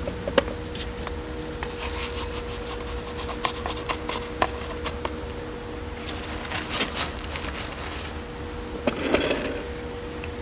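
Gloved hands firming gritty pebble potting mix around plants in a ceramic pot: scattered rustles, scrapes and small clicks of grit, with a longer hissing rustle about six to eight seconds in. A steady low hum runs underneath.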